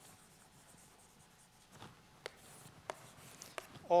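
Chalk writing on a blackboard: quiet scratching of the chalk broken by a handful of sharp, separate taps as letters are struck.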